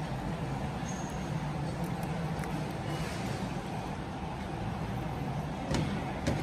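Steady low hum of a large indoor dining area with a faint murmur, and a couple of light clicks near the end, a spoon against a bowl.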